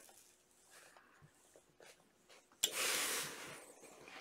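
Clothes iron letting out a hiss of steam as it comes down on folded fabric. The hiss starts suddenly about two and a half seconds in and dies away over about a second; before it there are only faint handling ticks.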